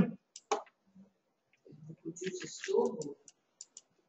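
Quiet murmured speech in the middle, then several light, sharp clicks in quick succession near the end.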